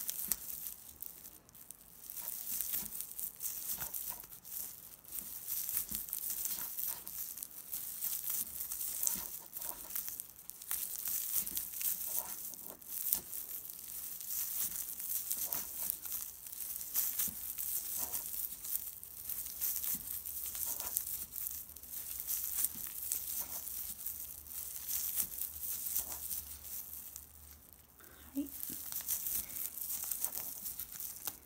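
Crinkly rustling of stiff, flat tape yarn being worked with an aluminium crochet hook in single crochet, the yarn pulled through and drawn tight stitch after stitch. It comes in uneven stretches of a second or two with short lulls between.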